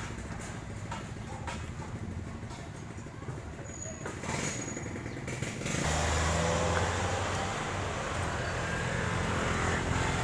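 A motor vehicle engine running steadily as a low hum, growing louder and rougher about six seconds in.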